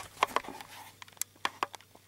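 Handling noise in the dark: a handful of short, sharp clicks and knocks, irregularly spaced, as things are fumbled and handled.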